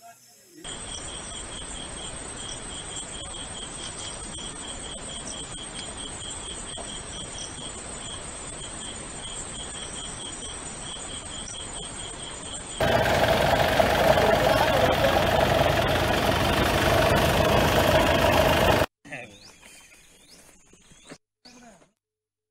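Insects chirping in a rapid, even pulse over a steady hiss of field ambience. About thirteen seconds in, a much louder rushing noise with a hum takes over for about six seconds and cuts off suddenly. A few faint short chirps follow near the end.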